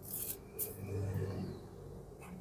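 Faint rubbing and brushing handling noise, two short hissy brushes near the start, over a low hum in a quiet car cabin.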